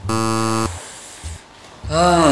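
A single harsh electronic buzz, one flat tone lasting about two-thirds of a second at the start. A voice starts near the end.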